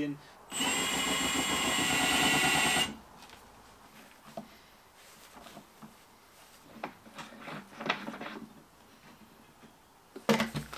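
A handheld power drill whines at high speed for about two and a half seconds, starting about half a second in, flattening the plastic around a hole in the fuel tank. A few faint clicks and scrapes follow as a brass fitting is pushed into the hole in the plastic tank.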